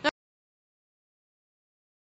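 A split second of voice cut off abruptly, then dead silence: the sound track is empty at an edit between two clips.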